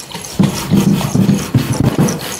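Container of homemade oil-and-vinegar cleaning mixture shaken hard, the liquid sloshing in quick rhythmic strokes, about four or five a second, to remix the oil that has separated out.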